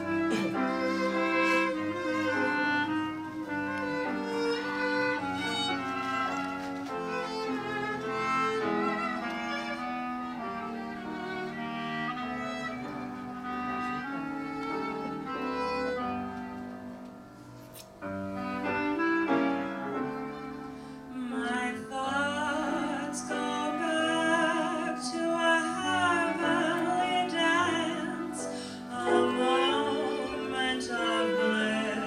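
A small classic jazz band playing a slow, pretty number, with violin and clarinet carrying the melody over string bass. About two-thirds of the way through, after a brief lull, a female vocalist comes in singing.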